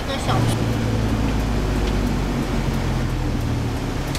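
A nearby motor vehicle's engine running at a steady pitch, a low hum that comes in about a third of a second in and drops away near the end, amid street traffic.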